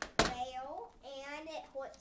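A young child's voice speaking or vocalising in a small room, with one sharp tap just after the start that is the loudest sound.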